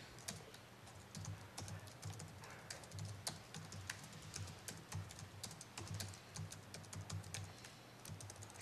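Typing on a laptop keyboard: a run of quick, irregular key clicks as code is entered.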